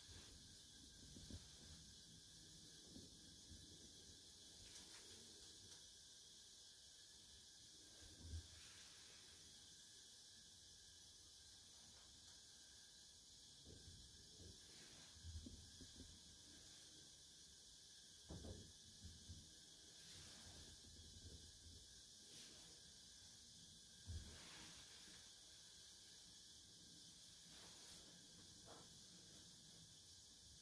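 Near silence: a steady faint hiss, broken by a few soft knocks and rustles several seconds apart as tea utensils and a silk cloth are handled on tatami.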